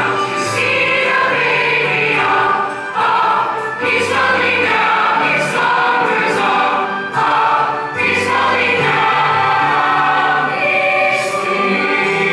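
A mixed-voice student jazz choir, boys and girls together, singing in harmony. The sustained chords change every few seconds.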